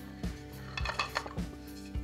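Plastic hubcap of a small wind-turbine hub being unscrewed and lifted off, giving a few light plastic clicks and rattles, over steady background music.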